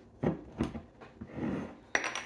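Glass soda bottle being handled and its cap worked at to twist it off: a few light knocks and clinks, then a sharp click near the end.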